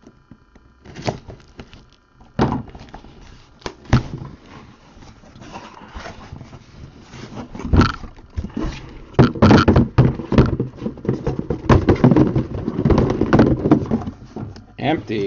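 Cardboard case and shrink-wrapped boxes of trading cards handled by hand: the case opened and the sealed boxes pulled out and set down on a table, giving scattered thunks and rustling that grow busier and louder over the last few seconds.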